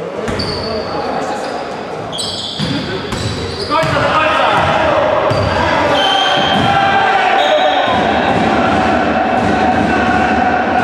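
Basketball play in a large gym hall: a ball bouncing on the wooden court and sneakers squeaking, with players calling out and the hall echoing. It gets louder about four seconds in.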